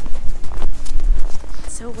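Wind buffeting the microphone with a loud, gusting low rumble, over footsteps crunching through snow at about two steps a second. A woman starts speaking near the end.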